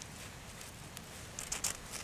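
A flint scraped with a metal striker: a few quick, high rasps about one and a half seconds in, throwing sparks into dry grass tinder.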